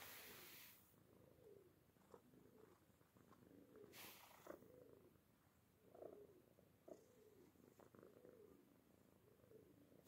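A domestic cat purring softly and steadily, close to the microphone. Two brief rustling hisses come at the start and about four seconds in.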